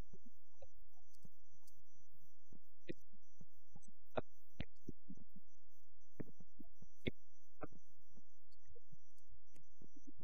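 A steady low hum with scattered faint clicks and ticks over it.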